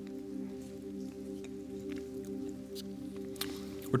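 Soft background music holding a steady chord, with scattered faint clicks and crinkles of prepackaged communion elements being opened and handled.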